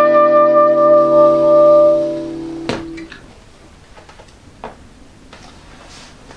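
Last note of a jazz duo: a soprano saxophone holds its final note over the acoustic guitar's final strummed chord. The sax stops about two seconds in and the guitar chord rings out and fades by about three seconds. A single knock comes just before the chord dies away, then only a few faint clicks.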